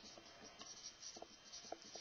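Faint marker pen writing on a whiteboard, a few short strokes.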